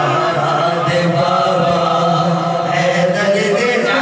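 A man's voice amplified through a microphone and loudspeakers, chanting a devotional recitation in long held notes, with the melody shifting near the end.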